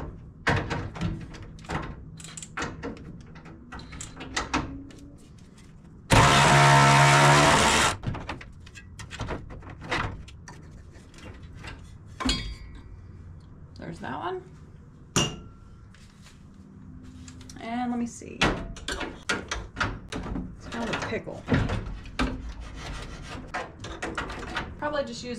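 Cordless power tool with a socket on an extension running in one burst of about two seconds, backing out a radiator mounting bolt. Around it, scattered metallic clicks and knocks of tools being handled on the bolts.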